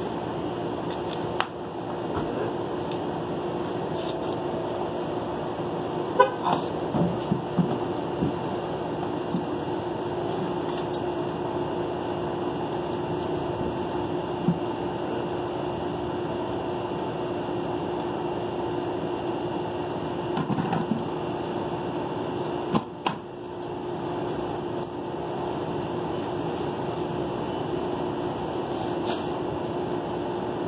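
A steady mechanical hum with a constant low tone, broken by a few scattered clicks and knocks.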